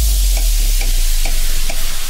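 Breakdown of a bass-boosted electronic dance track: a loud hiss of white noise over a deep sub-bass note that slowly fades, with faint ticks about twice a second.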